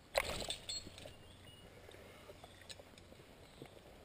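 A metal climbing nut tool swiped across the rock face: one short scrape just after the start, followed by a few light clicks.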